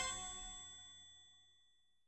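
A bell-like ding ringing out with several clear tones, fading away within about the first second into near silence.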